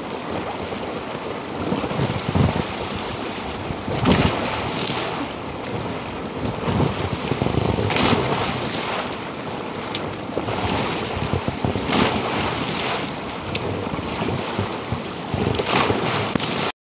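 Water rushing and sloshing in an inflatable hot tub as a person moves about in it. Sharper splashes come about every four seconds, and water is thrown onto the microphone near the end.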